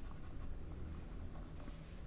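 Dry-erase marker drawing on a whiteboard: a string of faint, short scratching strokes.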